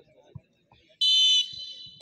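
Referee's whistle blown once, sharply, about a second in, signalling the penalty kick to be taken; the high shrill tone is loud for under half a second and then tails off.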